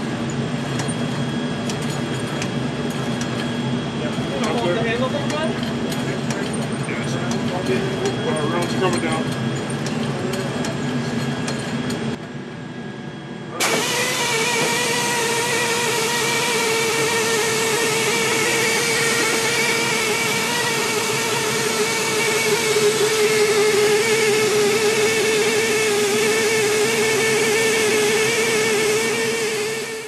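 Steady mechanical drone of flight-line machinery with faint voices in the first half. After a brief dip about twelve seconds in, a louder, steady whine with a clear pitch takes over.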